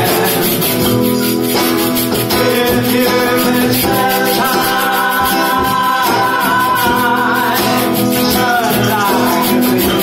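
A live band playing a song: a strummed guitar and steady hand percussion, with male voices singing long held notes through the middle.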